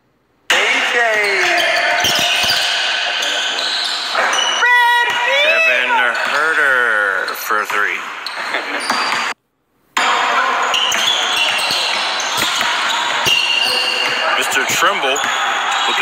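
Basketball bouncing on a hardwood gym floor during a pickup game, with players' voices echoing in the hall. The sound cuts out for a moment at the start and again just after nine seconds in.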